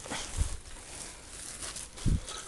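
Plastic bag rustling and handling noise as a water bottle is pulled out of it, with a dull low thump about half a second in.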